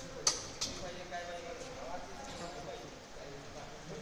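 Indistinct voices in the background, with two sharp clicks a fraction of a second apart near the start.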